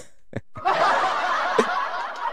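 A person laughing, starting about half a second in and tailing off near the end.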